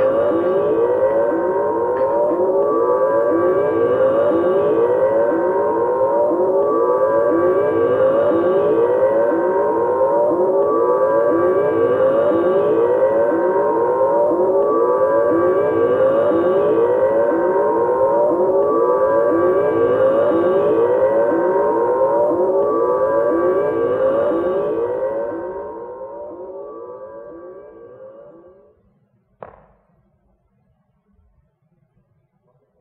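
Electronic siren-like warble: fast rising sweeps about three a second, with a slower swell every four seconds. It fades out over the last few seconds, followed by a brief click just before the end.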